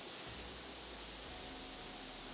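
Faint, steady background hiss with a low hum underneath: quiet ambience with no distinct sound event.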